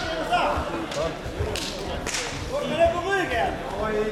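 Several voices calling and shouting over one another around a grappling match, with two sharp smacks about one and a half and two seconds in.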